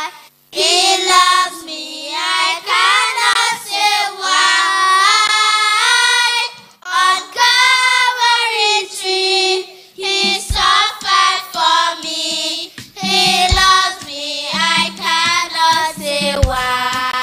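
A group of children singing together into microphones.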